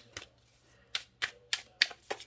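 A deck of tarot cards being shuffled by hand, the split packets snapping against each other in a quick, uneven run of sharp clicks.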